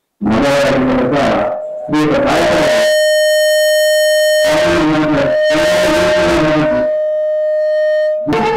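A man's amplified voice singing in phrases in a folk-theatre style. An accompanying instrument holds one steady high note under it from about two seconds in.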